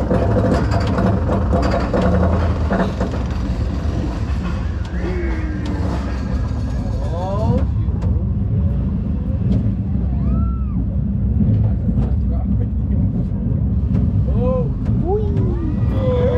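Arrow Dynamics steel roller coaster train being hauled up its chain lift hill: a steady mechanical rumble. A few faint voices can be heard over it.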